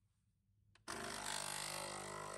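Capsule espresso machine: a short click, then about a second in its pump starts a steady buzzing hum as it begins to brew.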